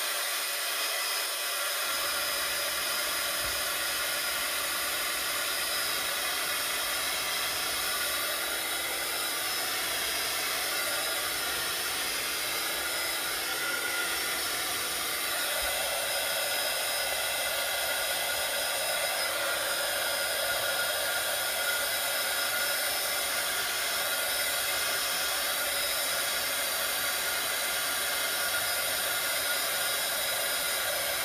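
Craft heat gun blowing steadily, drying freshly inked ribbons, with a slight change in its tone about halfway through.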